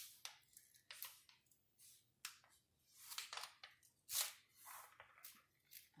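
Protective cover sheet being peeled back off the adhesive of a diamond-painting canvas: faint, irregular crackles and rustles of the sheet lifting away from the glue.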